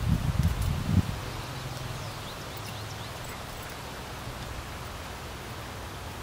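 Wind buffeting the microphone in a few irregular low thumps in the first second, then a steady low wind rumble with leaves rustling and a few faint bird chirps.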